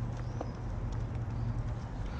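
Footsteps and rustling through grass and dry brush: soft, irregular crunches over a steady low rumble.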